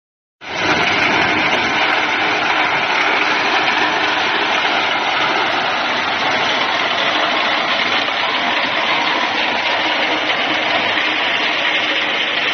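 Multi-crop thresher threshing corn, driven by its stationary engine: a steady, loud rush and clatter of the threshing drum and engine that starts about half a second in.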